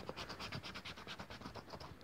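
Premia 777 lottery scratch card being scratched off: quick, light scraping strokes on the card's coating, about ten a second.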